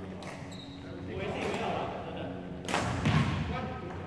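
A badminton racket hitting a shuttlecock with a sharp crack a little before the middle, followed by a heavy thud, with players' voices echoing around a large sports hall.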